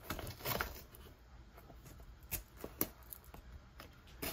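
Fingernails picking and scratching at the packing tape on a cardboard shipping box: a few faint, scattered scratches and small tearing sounds.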